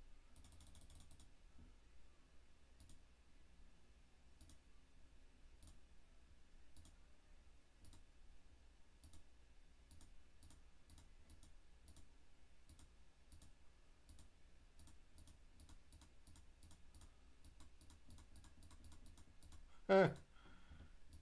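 Faint computer mouse clicks, scattered singly, with a quick run of clicks about half a second in as the scroll wheel turns. The clicks come more often near the end, closed by a brief louder sound.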